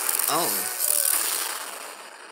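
Lightning-strike sound effect: a loud, noisy crash that is already going at the start and dies away over the second half. A short cry of "Oh" is heard near the start.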